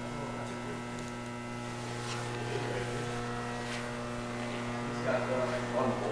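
Steady electrical hum made of several fixed tones, with faint voices about five seconds in.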